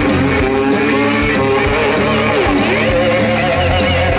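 Blues-rock band playing live: a lead electric guitar solo with string bends and vibrato over bass and drums.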